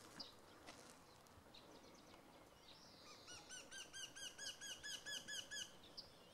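Faint birdsong. A small bird gives a few scattered high chirps, then about halfway through sings a fast run of a dozen or so repeated arched notes, about five a second.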